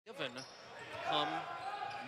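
A basketball being dribbled on a hardwood court, the bounces ringing in a large arena, under a commentator's voice.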